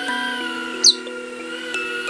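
A rosy-faced lovebird gives one short, sharp chirp a little before the middle, the loudest sound here. Under it run background music with a stepping melody and the wavering whine of a small indoor drone's motors.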